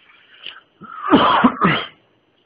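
A man coughing: a quick run of about three loud coughs in the second half.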